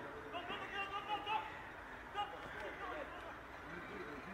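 Men's voices calling out across a football pitch, faint and broken into short shouts, over steady open-air background noise.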